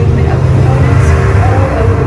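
A deep, steady rumble from a presentation's soundtrack plays loudly over a show sound system, with a narrator's voice above it.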